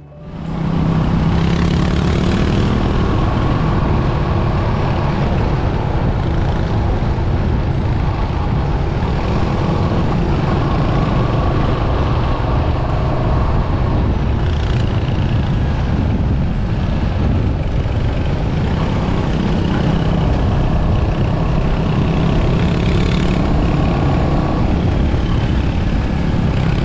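Motorcycle engines running at a steady road speed, with a constant rush of wind and road noise heard from a moving bike. The sound fades in over the first second.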